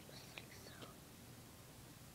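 Near silence: quiet room tone, with a few faint ticks in the first second.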